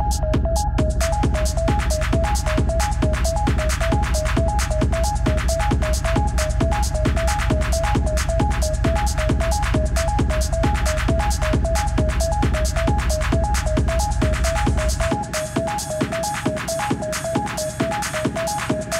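Hard techno track with a fast four-on-the-floor kick, about two and a half beats a second, and a short high synth note pulsing in step with it. About fifteen seconds in, the deep bass drops away and the kick carries on thinner, as the bass is cut in the mix.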